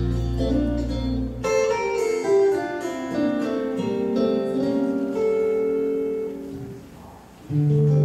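Live band playing an instrumental passage of a Hawaiian song, plucked guitar over sustained bass notes. The music drops away about a second before the end, then comes back in loudly.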